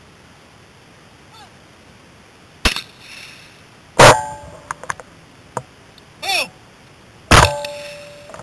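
Two shots from a Browning Silver 12-gauge semi-automatic shotgun, about three seconds apart, each followed by a metallic ringing. A sharp click comes shortly before the first shot and a few lighter clicks after it.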